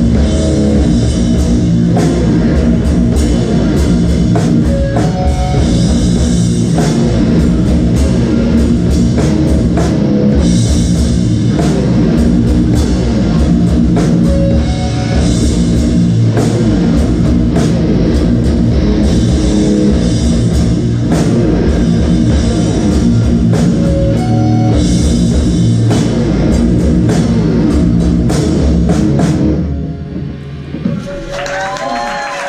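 Live heavy metal band playing loud and steady: distorted guitars, bass, a drum kit and keytar. The song cuts off at the very end.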